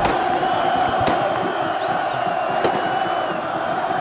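A large football stadium crowd chanting steadily, a continuous wash of many voices with no single voice standing out.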